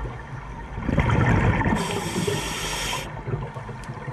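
A scuba diver's breath through the regulator, heard underwater: a burst of exhaled bubbles rumbling up about a second in, then a hiss of about a second as the next breath is drawn through the demand valve.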